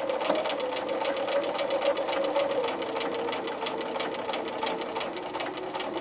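Bernina electric sewing machine running at a steady speed, stitching a strip of Velcro down onto fabric, its motor hum carrying a fast even patter of needle strokes. The motor's pitch drops slightly about halfway through.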